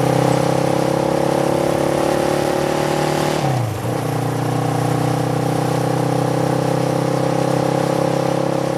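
A light motorcycle's engine running at a steady speed. Its pitch dips briefly about three and a half seconds in, then holds steady again.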